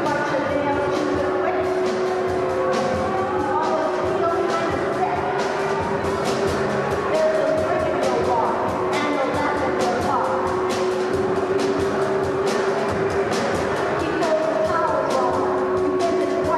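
Live rock band playing: a woman singing over a drum kit and electric bass, with steady regular drum and cymbal strokes.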